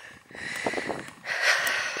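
A man's breathing close to the microphone while he walks, with two breaths, one after the other.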